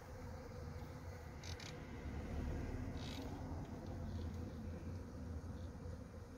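Honeybee swarm clustered in a tree, humming steadily, over a low rumble that grows in the middle. Two short high-pitched sounds come about a second and a half in and again about three seconds in.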